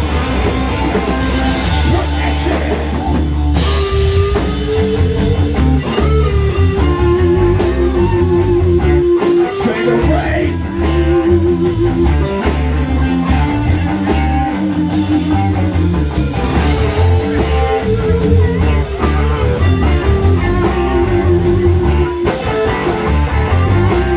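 Live rock band playing an instrumental passage: electric guitar holding long, wavering lead notes over bass and a drum kit, with cymbals keeping a fast steady beat.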